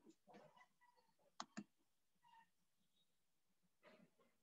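Near silence: faint room tone with a few small clicks, two sharp ones close together about a second and a half in.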